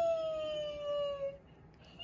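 Kitten giving one long drawn-out meow that slides slowly down in pitch and stops about a second and a half in.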